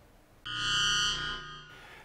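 A short synthesizer music sting, a transition jingle between segments: about half a second of silence, then a held chord of about a second that fades out.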